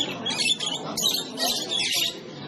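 Caged canaries and other small finches chirping in short high bursts, three or four times, over a steady murmur of visitors' voices.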